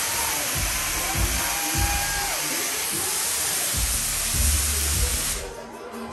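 Loud, steady hiss of stage CO2 jets blasting over club music with a thudding bass beat; the hiss cuts off sharply near the end.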